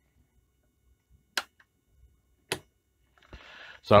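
Two sharp clicks about a second apart from handling the controls of a Smiths portable Desynn test set, then a short soft rustle.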